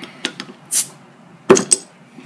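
A metal bottle opener clicking against the crown cap of a glass soda bottle, then a short fizz of escaping gas as the cap comes loose, followed by a louder knock about a second and a half in.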